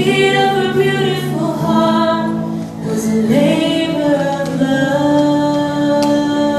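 A woman singing a slow song solo into a handheld microphone, holding long notes that change pitch every second or two.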